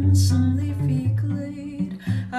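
Cello plucked pizzicato, a line of low notes changing every half second or so, under a woman's sung vocal line that carries on from the phrase before.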